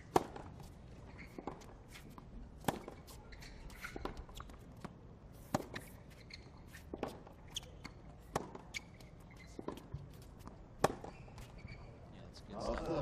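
A tennis ball knocking sharply on a hard court and off racket strings, about eight knocks at irregular intervals, the loudest right at the start, over a faint background murmur.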